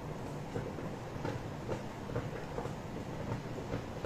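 Faint, steady low rumble of background noise, with a few soft ticks scattered through it.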